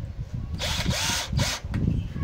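Cordless drill-driver driving a screw into the wall in two short bursts: a longer run of about three quarters of a second starting about half a second in, then a brief second burst.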